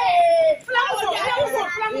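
Several women's voices shouting and crying out over one another during a scuffle, opening with one long drawn-out cry.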